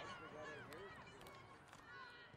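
Faint, distant shouting and calling from rugby players and spectators on an open field.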